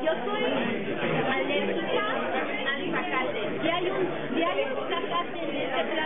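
Several people talking over one another: overlapping chatter of a group in a room, with no other sound standing out.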